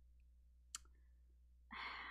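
Near silence broken by a single faint click about three-quarters of a second in, then a breathy sigh near the end.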